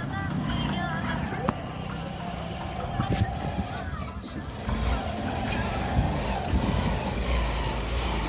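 Motorcycle cargo tricycle's engine running as it rides closer, its low rumble getting louder about halfway through.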